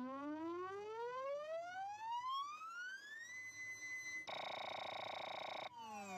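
Power-up and power-down sound effect from an Ital Resina Taga Disco Christmas kiddie ride: an electronic tone rising steadily for about three seconds, holding a high note, then a buzzy warbling tone for over a second. Near the end a falling tone sounds the ride powering down.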